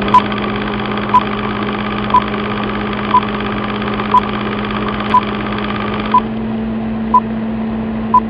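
Film-countdown sound effect: a steady mechanical hum of running machinery, with a short high beep once a second as the numbers count down. The upper part of the hum thins out about six seconds in.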